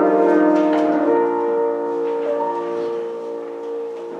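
Church organ playing sustained chords. A few notes change in the first second, then one held chord slowly fades.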